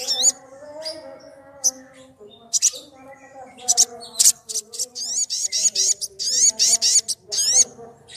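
Olive-backed sunbird singing: high, sharp chirps and quick sweeping whistled notes, scattered at first, then a fast run of rapid trilled phrases through the second half.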